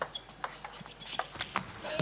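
Table tennis ball clicking off the bats and table in a rally: a quick run of sharp ticks, several a second. Crowd noise swells in right at the end.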